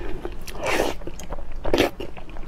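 Mouth sounds of eating: biting and chewing boiled egg, then slurping noodle-soup broth from a spoon, with two noisy bursts about a second apart.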